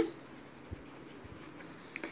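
Pencil writing on a workbook's paper page: faint scratching of the lead as a word is written out.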